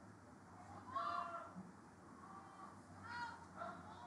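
Faint, distant high-pitched shouts from players or spectators calling out during play: two short calls, about a second in and about three seconds in, with a few weaker ones around them.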